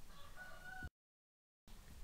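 A faint pitched call, like a distant animal or bird, sounds in the background and is cut off abruptly just under a second in. Dead silence from an edit follows, then faint room noise returns.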